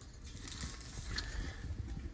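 Faint handling sounds over a low rumble: a few light clicks and knocks from a hand working around a propane tank's regulator and hose, with one brief tick about a second in.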